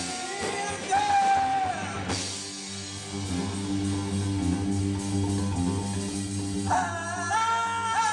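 Live rock band playing: electric guitars, bass guitar and drum kit, with a held vocal line about a second in and again near the end, and an instrumental stretch between.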